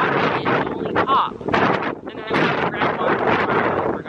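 Wind buffeting the microphone in a continuous loud rush, with faint, indistinct voices underneath.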